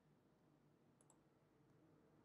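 Near silence: room tone, with two faint computer-mouse clicks in quick succession about a second in.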